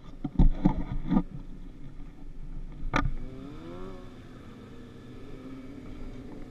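Thumps of footsteps and handling in the first second, a sharp knock about three seconds in, then an engine running nearby, its pitch rising briefly and settling into a steady note.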